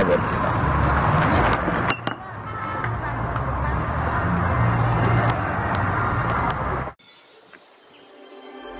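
Steady outdoor background noise with a low rumble and some voices, broken briefly about two seconds in and cutting off suddenly about seven seconds in.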